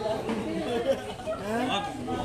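Several people's voices talking over one another: indistinct conversational chatter.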